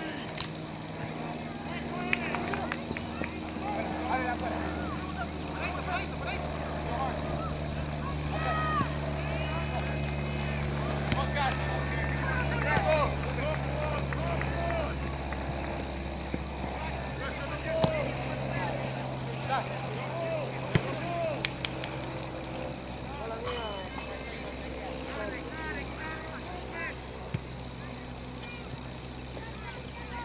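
Distant shouts and calls of players across an open soccer field, over a steady low mechanical hum. A few sharp knocks stand out, the loudest a little past halfway.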